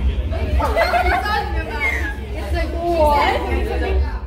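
Teenage girls chatting, their voices overlapping, over a steady low rumble.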